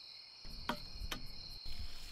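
Crickets chirping steadily as night ambience. About half a second in, a low rushing noise starts, with two sharp clicks, as a watering can begins pouring.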